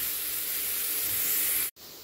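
Chopped beetroot sizzling as it is sautéed in oil in a nonstick pan, a steady hiss. Near the end it cuts off abruptly and comes back much quieter.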